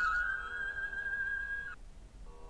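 Background flute music holding one long, steady note, which stops shortly before the end, leaving a brief near-quiet gap.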